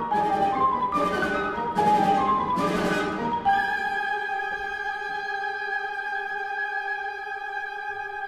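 Orchestral music with a marimba soloist: quick stepping runs of struck notes for the first three and a half seconds, then a long held chord.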